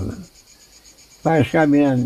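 A man talking in Turkish, stopping for about a second and then going on. A faint, high, evenly pulsing hum runs underneath throughout.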